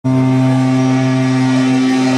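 Amplified electric guitar holding one loud, steady note through the stage amp, its overtones ringing unchanged.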